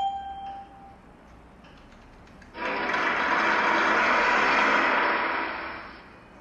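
A single electronic chime from the flash mental-arithmetic software as the last number appears. About two and a half seconds later comes a loud, even rushing noise that lasts about three seconds and fades out.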